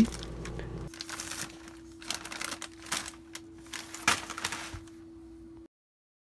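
Crinkling and crackling of a foil-lined potato chip bag as a plastic GripStic bag clip is slid over its folded, creased top: a scattered run of small crackles over a faint steady hum, cutting off abruptly near the end.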